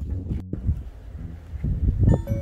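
Strong sea wind buffeting the microphone: an uneven low rumble with a brief cut-out about half a second in.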